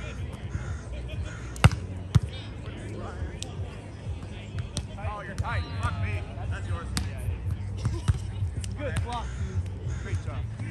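A volleyball being struck by hands and arms during a rally: sharp slaps, the loudest a little under two seconds in, another about half a second later, and fainter hits later on. Players' voices and a low steady rumble run underneath.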